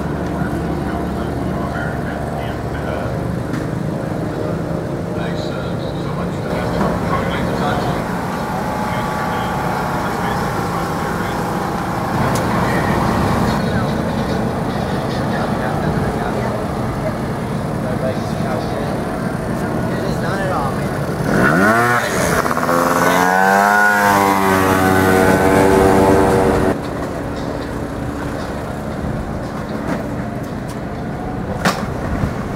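Race motorcycle engines running in the paddock; about two-thirds of the way through, one revs up sharply and is held at high, wavering revs for about five seconds before the sound drops away suddenly.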